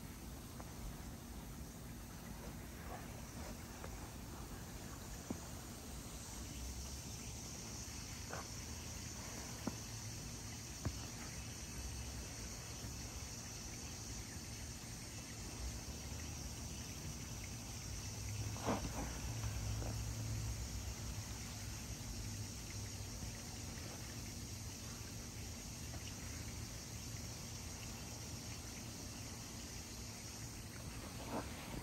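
Crickets chirping steadily in the background, a high even chirr that sets in about six seconds in, over a low outdoor rumble with a few faint knocks.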